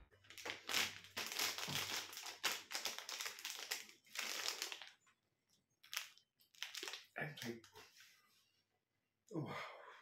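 Plastic snack packet crinkling as it is handled. The crackling is dense for the first five seconds, then comes in scattered bursts.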